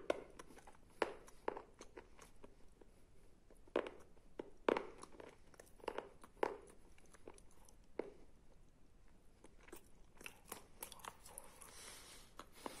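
Close-up chewing of a wet clay paste mixed with sandy clay: irregular crunches and small wet mouth clicks, with the louder ones bunched in the first two-thirds and softer, sparser ones near the end.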